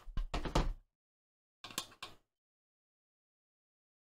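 Plastic project box and small parts being handled: a cluster of clicks and knocks in the first second, then a shorter cluster just before the middle.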